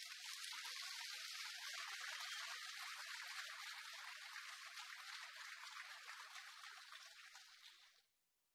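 Audience applauding, tapering off over the last couple of seconds.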